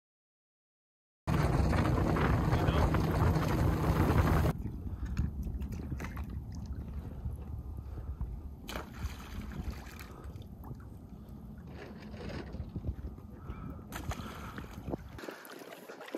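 Silence for about a second, then wind and water noise around a small boat: loud for about three seconds, then quieter with scattered knocks.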